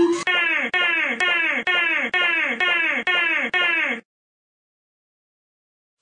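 A cartoon character's voice making a repeated wailing 'wooo' sound that falls in pitch. It comes about eight times at an even pace of roughly two a second, then cuts off abruptly about four seconds in, leaving silence.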